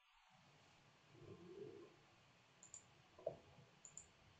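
Near silence: room tone with a few faint clicks, the kind made by a computer mouse.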